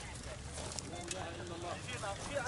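Men's voices calling out over outdoor background noise, one call held for about half a second near the middle, with a few scattered clicks and knocks.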